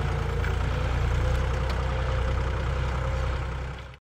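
Farm tractor's diesel engine running steadily as it pulls a disc plough through the field, fading out near the end.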